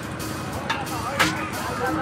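Voices in the background with a few sharp knocks and clicks, as on a stage being set up.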